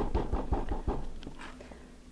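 A hand tapping a slab of air-dry clay flat on a sheet of paper: a quick, even run of soft thuds that trails off about a second and a half in.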